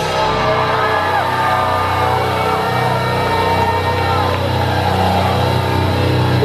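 Live rock band with distorted electric guitars and bass holding a loud, steady, sustained chord, with no drum hits, and faint shouts from the crowd.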